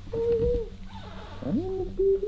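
A high, sing-song voice calling "I'm over here" in long, drawn-out syllables, the second phrase gliding up in pitch.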